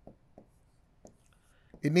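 A pen writing on a digital whiteboard screen: a few faint light taps and a brief soft scratch of the pen tip on the surface. A man's voice starts near the end.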